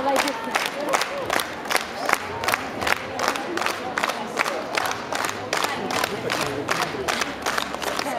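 Crowd noise in a large indoor hall: a steady din of voices with sharp, irregular hand claps several times a second.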